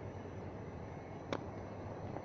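Steady background hiss with a low hum, broken by one sharp click about a second and a half in.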